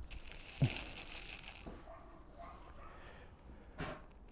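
A person shifting and sitting down on a wooden bench: clothing rustling, with one thump about half a second in.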